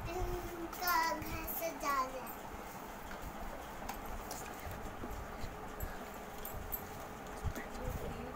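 A high-pitched voice makes a few short sounds in the first two seconds, then faint light knocks and clicks of objects being handled while setting up a wooden home shrine.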